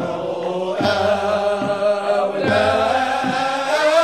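Sufi samaa choir chanting a madih, a devotional praise song, with the voices singing together over a steady low beat that falls a little more than once a second.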